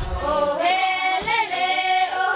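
A group of children singing together in unison, holding long notes that step from one pitch to the next.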